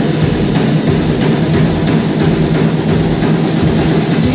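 Live rock band playing loud: drum kit driving a steady beat under electric guitars and bass.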